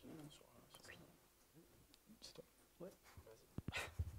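Near silence with faint, low voices away from the microphone, then a few handling knocks on a handheld microphone near the end as it is passed from one person to another.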